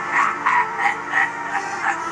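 Film soundtrack: a rhythmic pulsing sound, about three pulses a second, over steady held tones.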